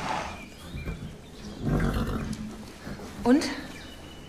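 A horse in its stall gives a short, low snort about two seconds in.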